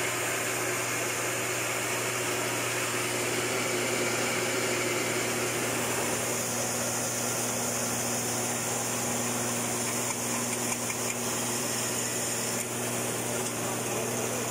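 Electric 3-in-1 rice mill with blower running steadily, its motor and mill making a constant hum under a hiss. Milled rice is streaming out of its chute into a plastic basin.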